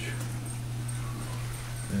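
A steady low hum with faint room noise, without any sudden sound.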